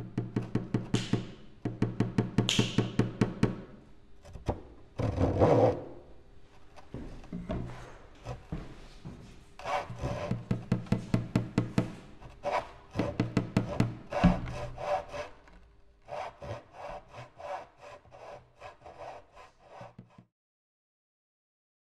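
A hand saw cutting wood in bursts of quick, even strokes with short pauses between them; about five seconds in there is one denser, smeared stretch of rasping.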